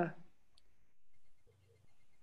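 The end of a woman's short spoken 'ja', then a single faint click about half a second later over a quiet video-call line.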